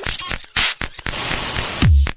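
Glitchy electronic music: crackling, static-like noise and clicks build into a bright wash of hiss, and a deep kick drum comes in near the end.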